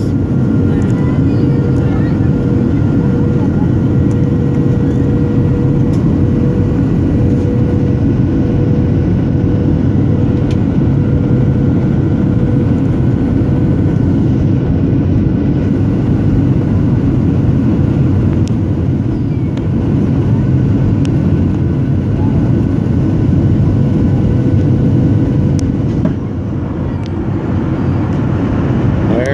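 Cabin noise of a Boeing 737 airliner on approach, heard from a seat over the wing: a steady drone of engines and rushing air with a thin steady tone over it. It gets slightly quieter about two seconds before the end.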